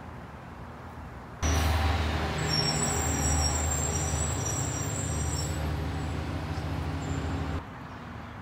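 A large truck's engine running steadily close by: a low hum with faint high tones above it. It cuts in about a second and a half in and cuts out shortly before the end. Before and after it there is only faint outdoor background.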